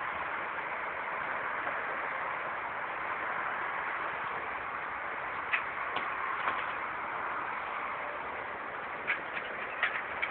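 Steady outdoor background noise, with a few light clicks or knocks around the middle and near the end.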